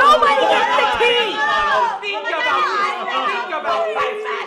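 Several people shouting over one another in a heated argument, with no single voice clear.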